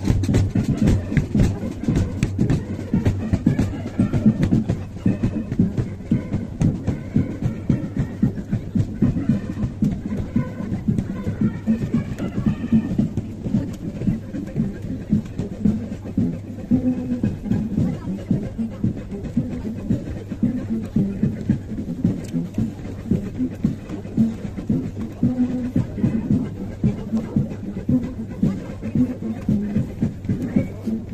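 Military brass band playing a march, with brass and drums, as the band marches past.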